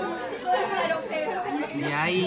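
Voices chattering, several people talking over one another, with no single voice standing out as words.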